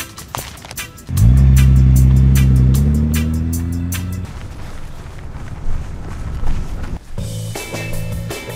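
A sports car's engine starts about a second in and revs, its pitch rising as it fades out over about three seconds; it is the loudest sound. A ticking music track plays under it, and a rock beat with guitar comes in near the end.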